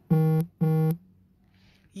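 Two identical short electronic beeps, low-pitched and buzzy, each about a third of a second long and half a second apart.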